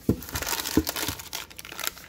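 Plastic snack wrappers and tissue paper crinkling and rustling as snack packets are handled and pulled out of a cardboard box, with a couple of soft bumps.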